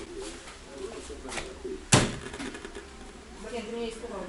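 A single sharp knock on the casing of an old CRT television, struck by hand to make its snowy, flickering picture show properly. Faint sound plays beneath it.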